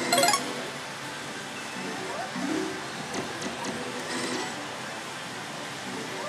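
Daito Giken Hihouden pachislot machine playing its music and electronic sound effects over the steady din of a pachislot hall, with a short loud burst right at the start.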